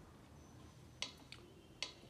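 A metronome ticking faintly: sharp clicks a little under a second apart, with a weaker click between the first two.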